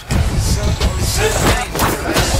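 Helicopter flying, a loud deep rumble of engine and rotor.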